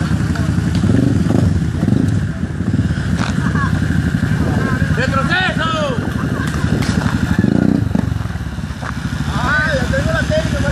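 ATV engine running, its throttle swelling and easing off, with voices calling out over it about halfway through and again near the end.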